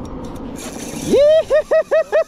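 A person laughing, starting about a second in: a rising whoop, then a quick run of about six short 'ha' pulses. Under it runs a low steady rumble.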